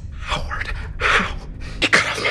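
A man whispering frantically into a phone, gasping between breathy words, panicked, over a low steady hum that drops away near the end.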